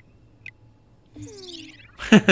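Sound effects from an animated show: tiny high squeaks from a cartoon mouse, one at the start and one half a second later, then from about a second in a falling, gliding comic sound effect, as Ruby gets an anime sweat drop.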